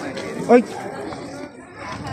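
People talking and chattering, with one short, loud call about half a second in.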